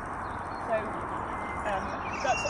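A woman's voice speaking, over a steady background hiss of outdoor noise.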